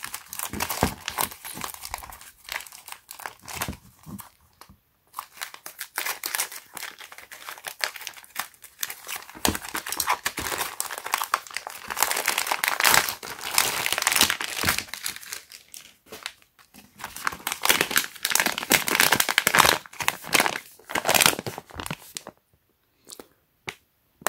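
A plastic poly mailer bag being crinkled and torn open by hand, with dense plastic crackling and rustling. There are brief lulls about five seconds in and again near the middle, and a short quiet spell just before the end.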